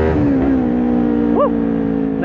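Kawasaki Ninja 400's parallel-twin engine running under way, its pitch dropping in the first moments as the revs fall, then holding steady. A brief rising-and-falling tone sounds about halfway through.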